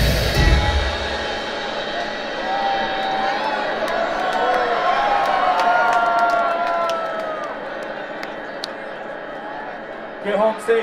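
Dubstep music with heavy bass cuts out about a second in, and a club crowd cheers and whoops, with scattered claps. The cheering slowly fades toward the end.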